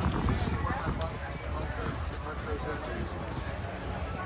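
Indistinct voices chatting over a steady low rumble of outdoor background noise, with a few light clicks.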